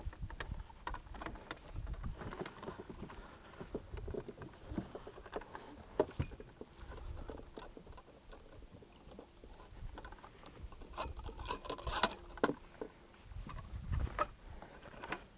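Scattered knocks and handling sounds in a fishing boat while a hooked muskie is played. A faint steady hum runs through the middle stretch, and the knocks come more thickly near the end.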